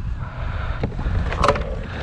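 Low rumble of wind and water around a plastic sit-on-top kayak, with a couple of light knocks about a second and a second and a half in.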